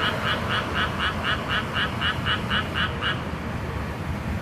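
A frog calling in a fast, even series of short croaks, about four a second, which stop about three seconds in, over a low steady hum of distant traffic.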